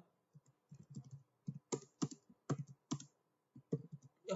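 Typing on a computer keyboard: an irregular run of short key clicks, with a few sharper strokes in the second half.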